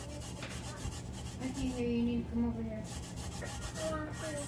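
Gloved fingertips rubbing back and forth over a glitter-coated tumbler in repeated strokes, burnishing the glitter flat. A voice is heard briefly in the background about halfway through.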